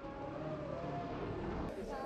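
Faint roadside background: a low, even rumble with faint, slightly wavering tones over it.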